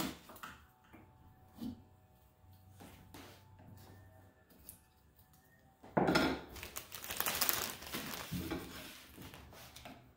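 Light clicks of small parts being lifted off the metal pins of a piano key frame. About six seconds in, a few seconds of loud scraping as a metal tool works along the wooden rail to take off the old felt.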